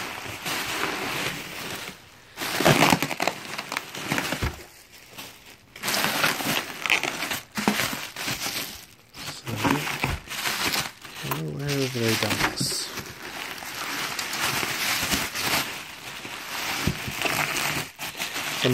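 Plastic bubble wrap crinkling and rustling as it is handled and pulled about inside a cardboard box, in bouts with short pauses.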